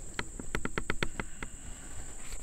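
Quick run of light clicks, about half a dozen in the first second, from a small priming horn working over the open pan of a flintlock rifle as priming powder is dispensed. A steady high insect trill runs underneath.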